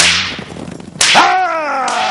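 Whip cracks: one sharp lash, then a second lash about a second later, followed by a pained cry that falls in pitch.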